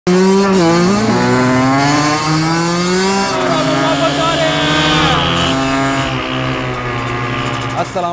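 Kawasaki KX100 two-stroke dirt bike engine running under throttle, its pitch gliding up and down and stepping several times as the revs change.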